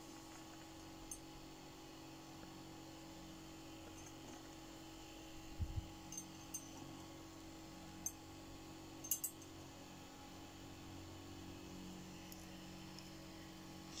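Faint clicks and light taps of a wire loop and crocodile clips being handled, a handful of them spread through, over a steady low hum.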